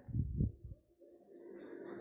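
Faint bird calls: a low cooing in the first half second and a few short, high chirps.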